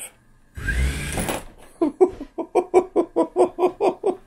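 Small geared DC motors of a robot car kit driving the car off under remote control. A short whir with a rising tone comes about half a second in, then a rapid, even pulsing at about five a second.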